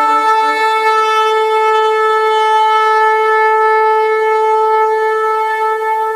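A shofar (ram's horn) blown in one long, steady note.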